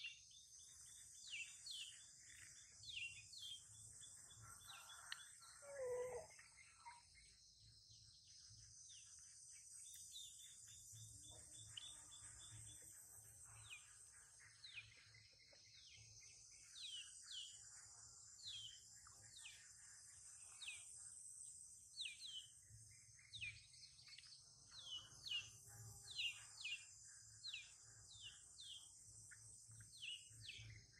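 Faint outdoor ambience: birds giving short, repeated, downward-sweeping chirps over a steady high insect drone, with one brief lower call about six seconds in.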